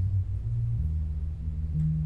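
Electric bass guitar playing a solo: a line of low plucked notes, a new note about every half second.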